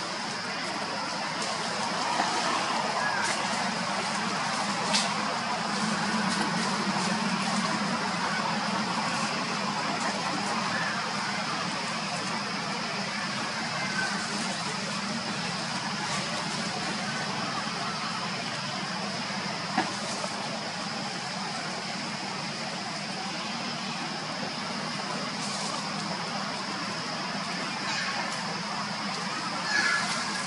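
Steady background noise with a constant high whine and a low hum, broken twice by a short click.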